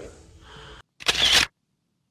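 A camera shutter firing once about a second in, a short sharp sound lasting about half a second that cuts off abruptly into silence.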